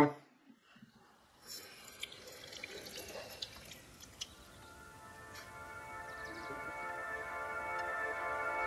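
Kitchen tap water running over a fish fillet in a stainless sink, faint, with a few drips and small knocks. From about halfway, sustained background music fades in and grows steadily louder.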